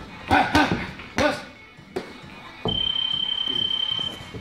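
Punches striking focus mitts, with three short, loud vocal bursts in the first second and a half. About two and a half seconds in, a sharp hit is followed by a steady high-pitched beep that lasts over a second.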